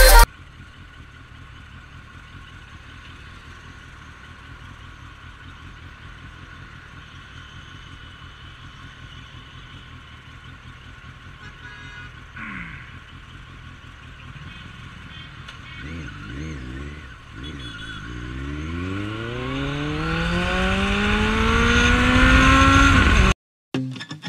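Suzuki Bandit 1250S inline-four engine, first running quietly under traffic noise. From about two-thirds of the way through it revs up hard, its pitch climbing steadily and getting much louder as the bike accelerates, until the sound cuts off suddenly near the end.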